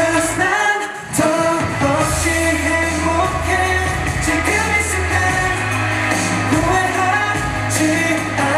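Pop song with a male lead vocal over a synth bass and beat. The music dips briefly about a second in, then a deep bass line comes back in under the singing.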